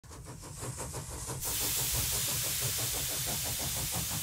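A steam engine running with a low, fast, even beat, joined suddenly about a second and a half in by a loud, steady hiss of steam.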